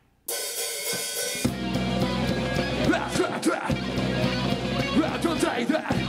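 A nu-metal band starts a song: the drum kit comes in suddenly with a cymbal wash a moment in, and about a second and a half in the full band joins with heavy guitars and bass.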